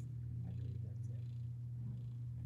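A steady low hum with no other clear sound over it.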